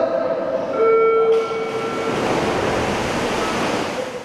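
Echoing indoor swimming-pool noise: swimmers splashing through the water of a race, with a few steady tones held over it during the first two seconds.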